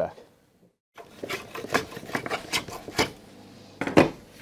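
Dry wood shavings rustling and scraping as they are swept by hand across a planed maple guitar body, in a run of short scratchy strokes starting about a second in, with a sharper knock near the end.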